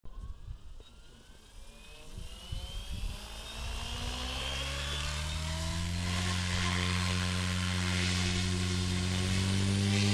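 Goblin RAW 500 electric RC helicopter spooling up on the ground. The whine of its brushless motor and the hum of its rotor rise steadily in pitch and grow louder over the first six seconds. They then hold steady once head speed is reached.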